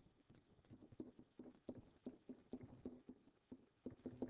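Faint, quick taps and scratches of a stylus writing on a pen-input surface, several strokes a second.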